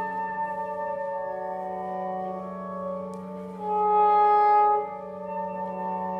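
Soprano saxophone playing slow, long held notes that overlap one another over a steady low drone; one note swells louder for about a second past the middle.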